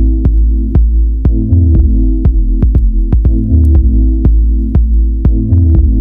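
Deep house / dub techno track played from a vinyl record: heavy sub-bass and held low chords under a sharp click-like percussion hit about twice a second.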